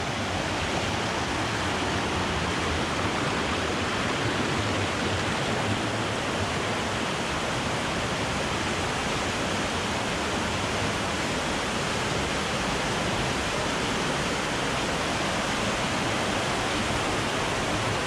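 Fast, swollen stream rushing and churning as white water over rocks and a low ledge in a stone channel: a steady, unbroken rush of water.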